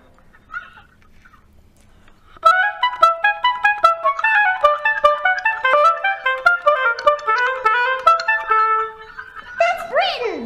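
An oboe playing a quick, running melody of short notes that begins about two and a half seconds in and ends on a held lower note.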